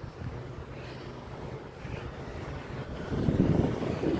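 Low wind rumble on a handheld phone's microphone, getting louder about three seconds in.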